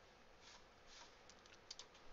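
Near silence with a few faint, scattered computer keyboard clicks.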